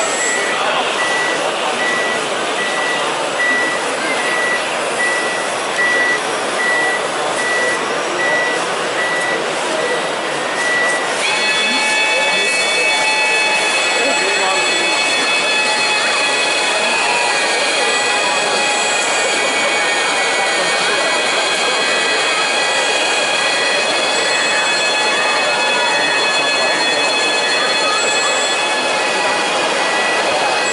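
Reversing beeper of a radio-controlled model snow groomer, beeping regularly over a steady background of voices and hall noise. About eleven seconds in, several steady high whining tones join in and hold.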